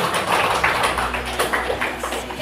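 A group of students clapping their hands: many quick, overlapping claps.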